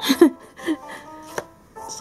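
A woman's short burst of laughter, then a brief vocal sound and a single sharp tap about a second and a half in, over soft background music.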